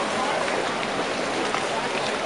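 Water rushing and splashing along the hull of a moving canal boat, with faint chatter of voices in the background.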